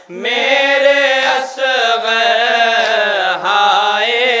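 Urdu nauha, a Shia mourning lament, sung by a male reciter into a microphone. He draws out long wavering lines with brief breaks and no clear words.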